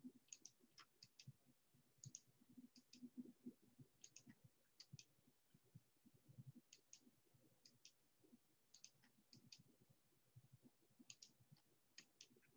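Faint computer mouse clicks, coming in quick clusters of two or three every second or so: right-clicks opening a menu and left-clicks choosing from it.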